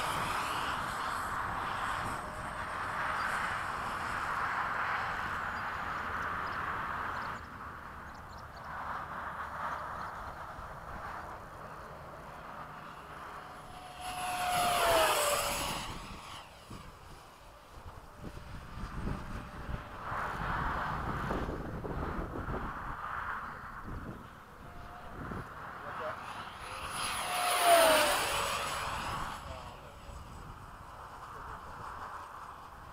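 Electric ducted-fan RC model F-16 jet with a 70mm fan, flying. Its high fan whine rises and falls as it comes and goes, with two loud close passes about 15 s and 28 s in, the pitch dropping as it goes by.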